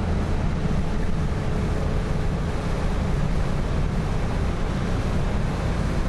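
Road noise inside a moving car's cabin: a steady low rumble of engine and tyres with wind noise over it, and a faint steady whine through the first half.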